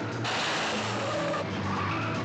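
Car tyres squealing and skidding on the road, a harsh, noisy screech that sets in suddenly about a quarter of a second in and holds.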